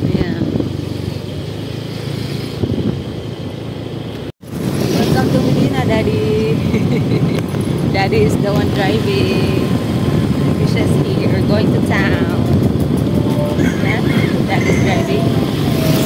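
Motorcycle engine running steadily while riding, mixed with a dense low rumble, with a brief break about four seconds in, after which it is louder.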